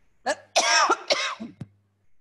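An elderly woman coughing and clearing her throat: a small catch, then a loud cough about half a second in and a shorter one just after.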